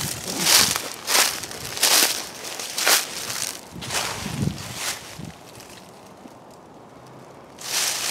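Footsteps crunching through dry fallen leaves at a steady walking pace, about one step every two-thirds of a second, stopping about five seconds in.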